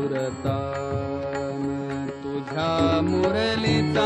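Marathi folk gavlan music: tabla strokes under held melody notes, with a male voice singing a long held note in the second half.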